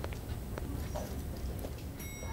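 Footsteps on a hard polished stone floor: one clear step at the start, then fainter steps as the walker moves away, over a low steady rumble.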